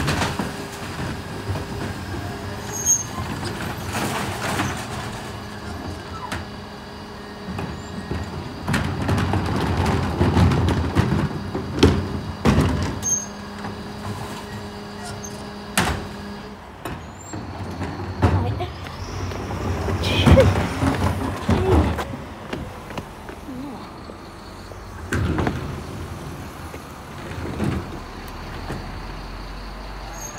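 Mercedes-Benz Econic bin lorry running, its Terberg OmniDEL bin lifts raising and tipping wheelie bins, with repeated knocks and bangs of plastic bins against the lift and body. A steady mechanical hum stops about halfway through.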